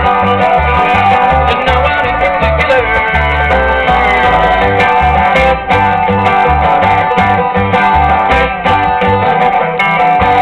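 Bluegrass band playing live: banjo, mandolin, acoustic guitar and upright bass, with the bass notes keeping a steady pulse underneath.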